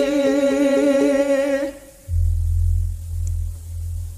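Javanese calung banyumasan music: a singer holds one long, slightly wavering note that breaks off after about a second and a half. After a short gap a deep, steady low tone sounds on its own.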